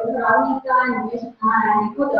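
A high-pitched voice in a lively run of syllables, with a brief break about one and a half seconds in.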